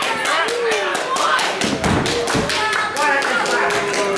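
Wrestling crowd clapping in a quick steady rhythm, about five claps a second, with voices shouting over it. A couple of dull thuds come about two seconds in.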